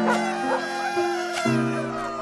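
A bulldog vocalising in drawn-out cries that waver and glide in pitch, over background music with held notes.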